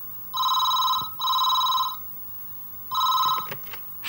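Landline telephone ringing in a double-ring pattern with a steady electronic tone: two rings back to back, a pause of about a second, then a third ring.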